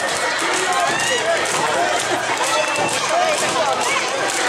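Many Awa Odori dancers' voices calling out over one another, with a patter of dancing footsteps on the road.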